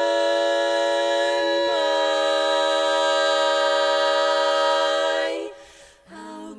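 Women's barbershop quartet singing a cappella in four-part harmony: a held chord that moves to a new chord a little under two seconds in, sustained, then released near the end.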